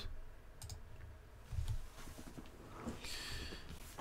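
A few faint, scattered clicks from a computer's mouse or keys as a chess board on screen is flipped and set up, with a short soft hiss about three seconds in.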